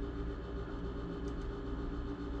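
Steady low hum with a faint hiss: room tone, with no distinct tool or handling sounds standing out.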